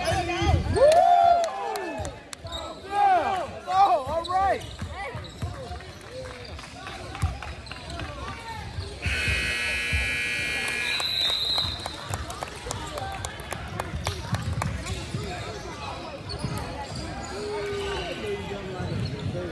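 Basketball game sounds on a hardwood gym court: sneakers squeaking and the ball bouncing during play in the first few seconds, with people talking. About nine seconds in, the scoreboard horn sounds steadily for about two seconds as play stops, followed by a short high tone.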